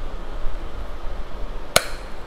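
A single sharp plastic click near the end as a tight-fitting part is pressed home on a plastic toy gyrocopter, showing that the part has snapped into place.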